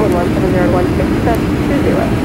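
Steady engine and airflow drone inside the cabin of a Boeing 757-300 on final approach, heard from a seat over the wing, with a voice talking over it in the first second and again near the end.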